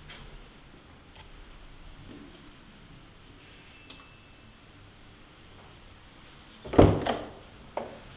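A doorbell chime, a brief high electronic tone about halfway through, then near the end a loud clunk of the door's latch and a couple of lighter knocks as the door is opened.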